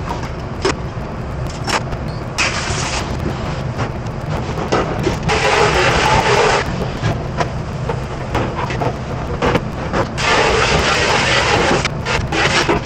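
Commercial pre-rinse spray nozzle blasting water onto stainless steel pans in hissing bursts, loudest about five to six and a half seconds in and again from ten seconds on, with short clanks of metal pans and utensils. A steady low machine hum runs underneath.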